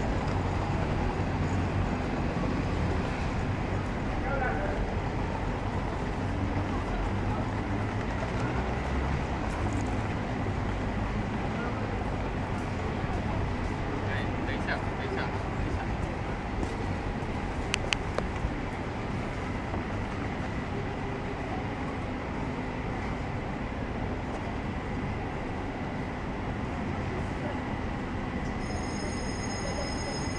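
Steady city street background noise, mostly a low rumble, with faint voices in it and a few short ticks about two-thirds of the way through.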